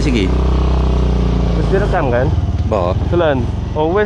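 Motorcycle engine running steadily while being ridden, with a voice calling out three times over it in the second half.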